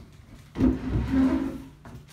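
Large cardboard shipping box being handled, its flap pushed and the box shifted, giving a dull, low scuffing that lasts about a second.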